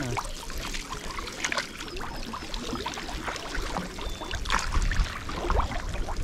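Reservoir water sloshing and splashing close to the microphone, with irregular small splashes and trickles, as men wade chest-deep handling a wet cast net.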